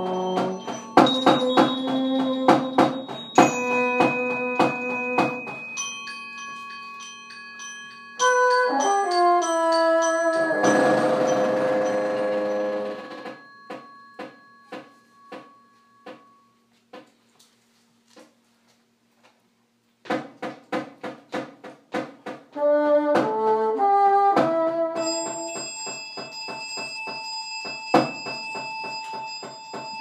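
Contemporary chamber music for bassoon, percussion and glockenspiel. Struck glockenspiel and mallet-percussion notes ring on over the first seconds, and a run of stepped notes leads into a thick held chord about ten seconds in. A quiet stretch of soft ticking over a faint low held note follows, then struck notes return about twenty seconds in and ring on.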